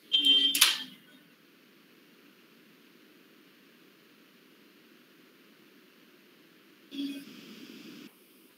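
Faint steady hiss from an open microphone on a video call, broken by a brief snatch of voice in the first second and another short one about seven seconds in.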